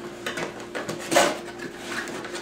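Packaging and small accessories being handled as they come out of a camcorder box: light rustling and small clicks, with one louder rustle a little over a second in.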